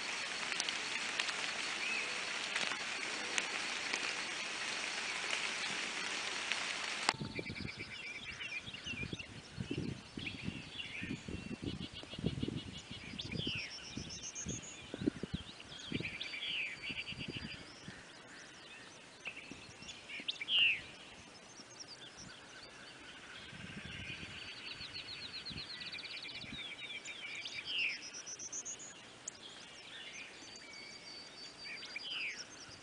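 A steady hiss for the first seven seconds, cut off abruptly. Then several songbirds singing outdoors: repeated trills, rising whistles and short chirps, with dull low thumps for several seconds after the cut.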